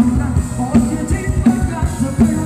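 Live Thai ramwong dance music: a band playing a steady drum-kit beat under a wavering melody line.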